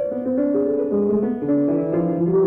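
Instrumental accompaniment in a cantorial piece: sustained notes in several parts moving in steps from one note to the next, with no solo voice standing out.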